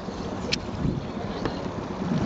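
Wind buffeting the microphone as a steady low rumble, with a single sharp click about half a second in.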